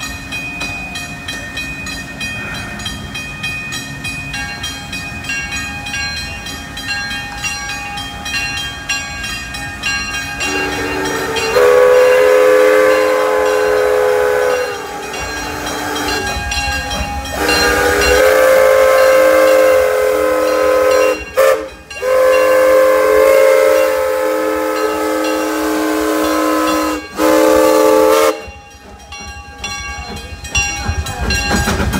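Steam locomotive's chime whistle blowing a series of long blasts, several pitches sounding together, starting about ten seconds in and stopping shortly before the end. Before it, a railroad crossing bell rings steadily.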